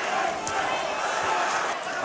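Arena crowd noise, a steady hubbub from the audience at a boxing match, with one sharp smack about half a second in.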